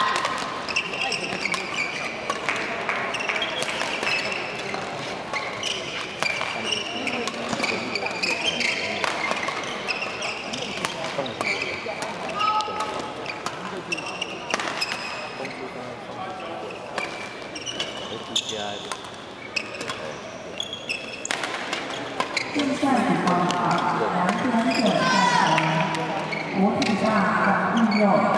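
Badminton doubles play in a large hall: sharp racket strikes on the shuttlecock and short squeaks of shoes on the court floor, with voices around the hall. The voices grow louder in the last few seconds.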